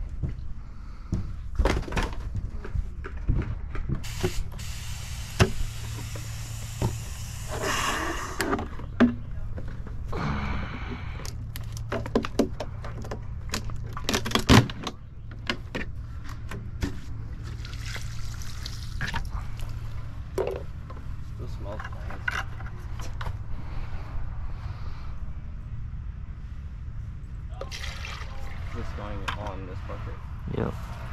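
Plastic buckets and lids knocked and handled while liquid paver sealer is poured into a bucket, with many short clicks and knocks and a steady low hum underneath.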